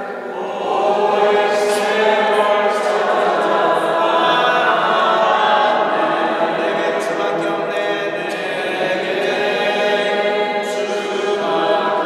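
A group of voices singing together a cappella, holding long sustained notes that ring on in the echo of a stone church hall.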